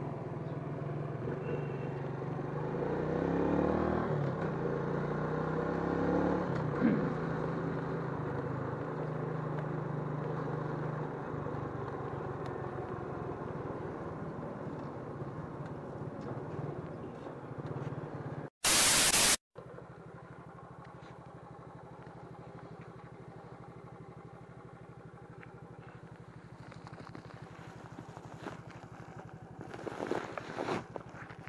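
Suzuki underbone motorcycle's engine running while being ridden, rising and falling in pitch for the first several seconds, then a quieter steady hum. A sudden loud burst of hiss lasting under a second breaks in about 19 seconds in.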